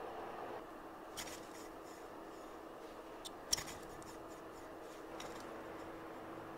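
Paper wind wheel handled on its needle axis: a few short paper clicks and rustles, the sharpest about three and a half seconds in, over a faint steady hum.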